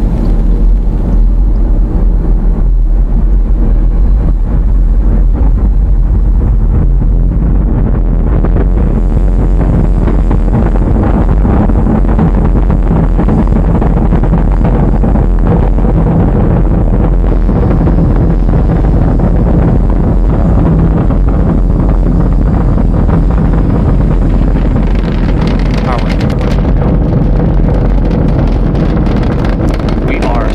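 Falcon 9 first stage's nine Merlin 1D engines running during ascent. A loud, steady, deep rumble with a dense crackle through it, the engines reported running at nominal chamber pressure.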